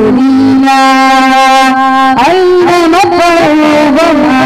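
A boy singing a Malayalam Mappila song into a microphone, holding one long steady note for about two seconds and then moving on through a few quick turns in pitch.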